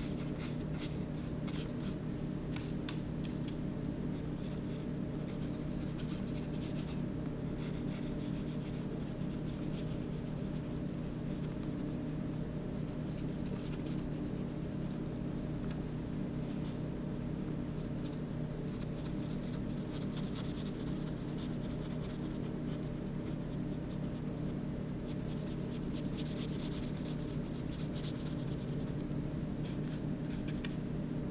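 A drawing or colouring tool rubbing over paper in irregular scratchy runs of strokes, heaviest in the last few seconds, over a steady low hum.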